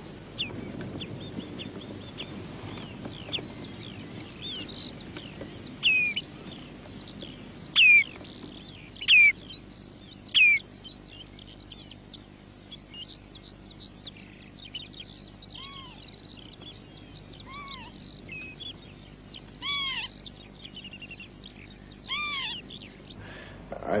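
Outdoor birdsong: many short, high chirps and tweets throughout. There are a few louder, sharply falling calls about a third of the way in, and several lower arched calls in the second half. A man's voice begins right at the end.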